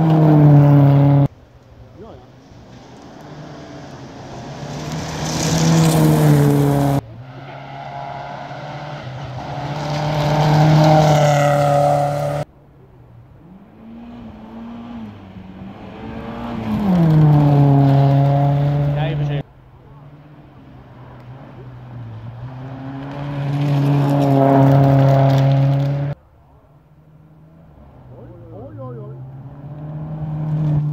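Volvo 940 rally cars passing one after another at full throttle on a gravel stage. Each engine builds up loud as the car nears, with the note rising and dipping through gear changes and lifts, then cuts off suddenly at an edit about every five to seven seconds.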